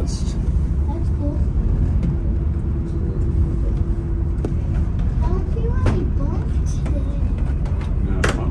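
Steady low rumble of a moving aerial tramway cabin on its descent. A faint level hum joins in for about two seconds near the middle, with a few light clicks later.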